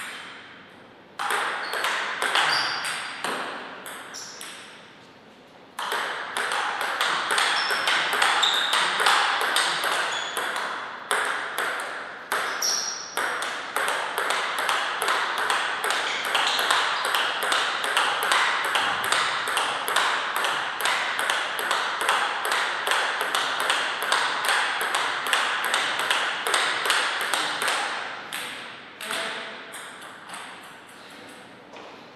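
Table tennis ball knocked back and forth, clicking off rubber-faced bats and bouncing on the table. A short run of hits comes about a second in, then a pause, then from about six seconds in a long unbroken rally of knocks at an even pace, several a second, which dies away near the end.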